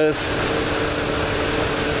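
Motorcycle cruising at a steady speed: wind rushing over the rider's microphone with a steady engine hum underneath.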